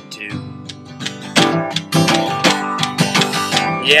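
Acoustic guitar strummed in a steady folk rhythm during a short instrumental break between sung lines. The singer's voice comes back in right at the end.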